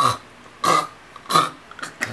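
Three short vocal noises from a woman, about two-thirds of a second apart.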